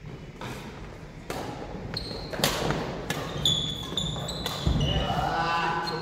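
A doubles badminton rally: a string of sharp racket hits on the shuttlecock and footfalls on the wooden court floor, with short high squeaks of trainers on the floor in the middle. Men's voices come in near the end as the rally stops.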